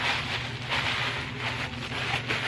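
Thin tissue paper crinkling and rustling in uneven surges as it is folded up by hand.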